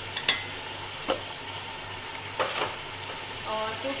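Chickpeas, tomatoes and freshly added ground spices sizzling in hot oil in a metal pot, with a steady frying hiss. A metal slotted spoon clinks and scrapes against the pot as the mix is stirred; the sharpest clink comes about a quarter second in.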